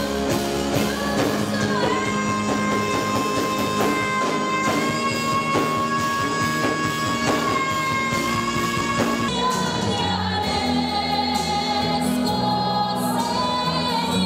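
A woman singing into a handheld microphone over a musical backing track. She holds one long note from about two seconds in until about nine seconds, then drops to a lower note sung with vibrato.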